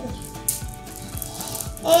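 Strands of beads clicking and rattling as they are handled, with a few sharp clicks, the clearest about half a second in. Faint background music runs underneath.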